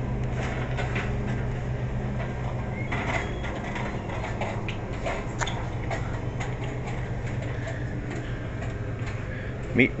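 Steady low hum of a store's refrigerated freezer cases, with scattered light clicks and knocks over it.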